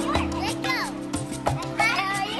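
Children's voices calling out over background music with steady held notes; the voices grow louder near the end.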